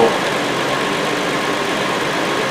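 Hyundai Sonata 3.3-litre V6 idling steadily with the A/C compressor clutch engaged.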